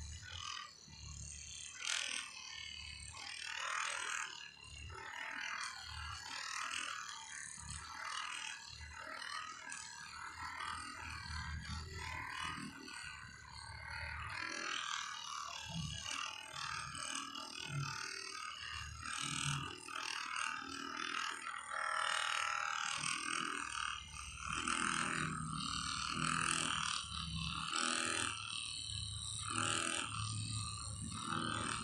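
Handheld percussion massage gun running with its head pressed against a person's back through clothing. It buzzes, and its sound rises and falls unevenly as it is pressed and moved.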